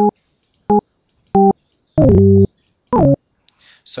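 LMMS TripleOscillator software synth sounding short single notes as the piano-roll keys are clicked: five brief notes with gaps of silence between them. The fourth note is held longest, and the last two slide down in pitch as they start.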